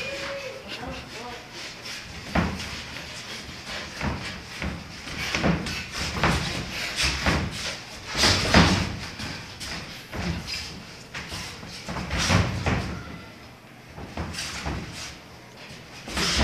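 Boxing gloves landing punches in a sparring exchange: irregular sharp thuds, often a second or two apart, some in quick pairs.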